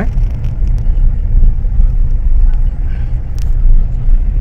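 Road and engine noise of a car heard from inside the cabin while driving on a rough dirt road: a steady low rumble.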